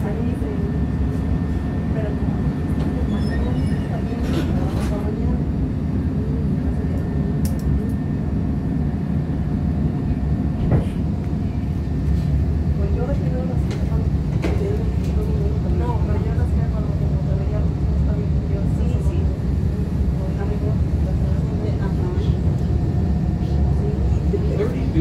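Inside a CTA 2600-series rapid-transit railcar as it pulls out of an elevated station and runs on: a steady low rumble of wheels and traction motors, with a thin steady whine above it.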